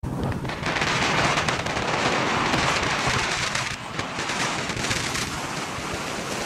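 Steady wind rush with crackling over a phone microphone, held by a rider on a moving Can-Am Spyder three-wheeled motorcycle.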